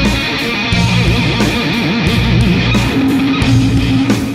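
Stoner rock/metal song played back: a heavy electric guitar riff with rhythmic chugging, settling on a held low note near the end.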